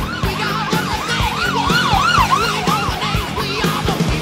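Emergency-vehicle siren on a fire chief's SUV in a fast yelp, about three rises and falls a second, loudest about halfway through and fading near the end. Rock music with a steady drum beat runs underneath.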